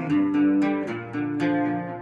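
Acoustic guitar played on its own, chords picked and strummed in a steady rhythm of about three to four strokes a second, each chord left ringing.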